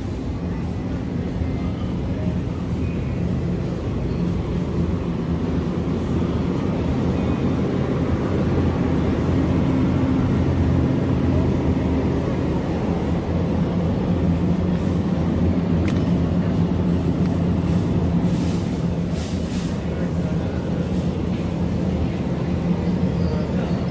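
Steady low hum and rumble of a store interior, with a few faint clicks near the end.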